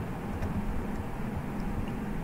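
Steady low background hum of room noise, with a faint click about half a second in.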